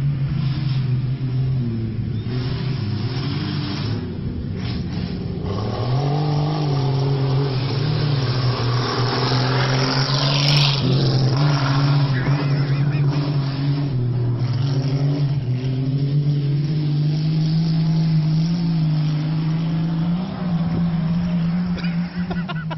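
Race car engines held at high revs on a dirt track, the pitch stepping up and down, with one car passing close by about ten seconds in.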